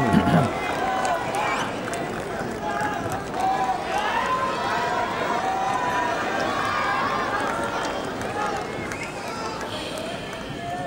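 Crowd in a tennis arena between points: many spectators' voices overlapping in steady chatter and calls. A single cough comes near the start.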